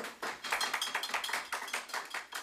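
Several people clapping their hands, a quick, uneven run of claps.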